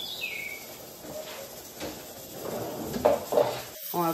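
A songbird's whistled call right at the start, one note gliding down in pitch. It is followed by soft, scattered knocks and handling noises of cookware.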